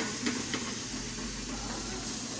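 Food frying in a small pan on a gas burner, a steady hiss, with three light knocks of a utensil against the pan in the first half-second.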